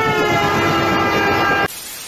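Cartoon sound effect of a train rushing past with its horn blaring, the horn's several tones dipping slightly in pitch. It cuts off sharply near the end, leaving a quieter hiss of TV static.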